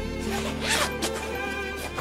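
Zipper of a small red suitcase being pulled open, a quick rasping zip about half a second in, over soft background music.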